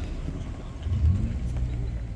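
Low outdoor rumble with no speech, swelling briefly about a second in.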